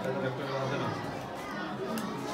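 Speech only: people talking over one another in a room.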